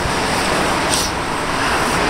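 Road traffic: a steady rush of tyre and engine noise from vehicles passing on the street.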